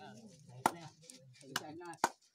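People's voices with a few sharp knocks, the loudest about two-thirds of a second in and another at the very end.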